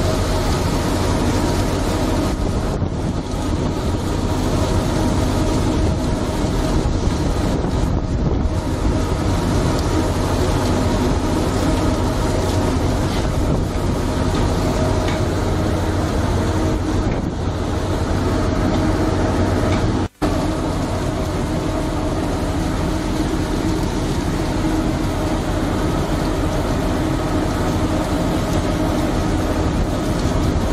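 Steady drone of a trawler's engine and deck machinery, mixed with the wet rush of a large catch of fish pouring from the net into the hopper. The sound cuts out for an instant about twenty seconds in.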